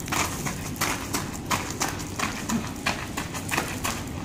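Shoes landing and scuffing on gravel in quick, irregular steps, about three to four a second, as a person hops and throws kicks.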